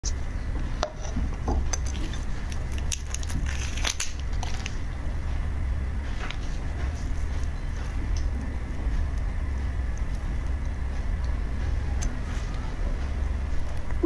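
Close-miked crackles and clicks of large red shrimp being handled and their shells pulled apart by hand. They are scattered irregularly over a steady low hum.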